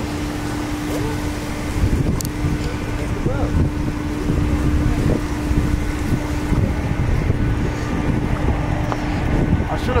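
Wind buffeting the microphone as a low, uneven rumble, with a steady hum underneath that drops out about two-thirds of the way through.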